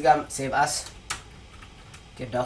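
Computer keyboard typing: a few keystrokes with one sharp click about a second in, after a brief spoken word at the start.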